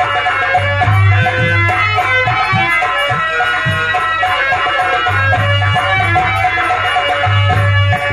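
Folk theatre accompaniment: a nagada kettle drum and a dholak barrel drum playing a steady rhythm of low strokes under a melody instrument holding sustained notes.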